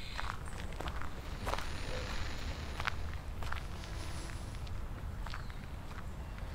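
Slow footsteps on dry, twig-strewn ground, about one step every two-thirds of a second, over a steady low rumble.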